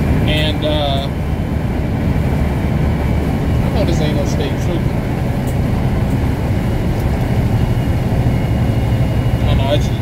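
Steady low engine and road rumble inside a semi-truck cab cruising at highway speed.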